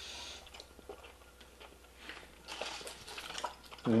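Faint chewing of a soft, chewy toffee candy, with small irregular mouth clicks that grow a little louder past the halfway point.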